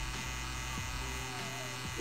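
Pen-style rotary tattoo machine with a needle cartridge running at a steady buzz while stippling dotwork into the skin.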